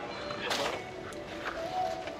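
Faint background music with distant voices, and a short noise of the potted tree being handled about a quarter of the way in.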